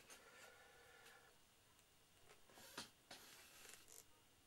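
Faint scratching of a knife carving a small model plane's nose, in a few short strokes in the second half.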